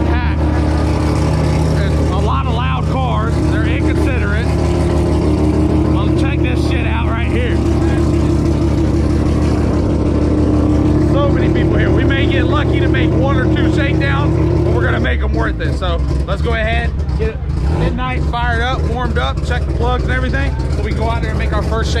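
An engine running steadily at idle nearby, with people talking over it. Its steady note drops away about fifteen seconds in, leaving the voices over a lower rumble.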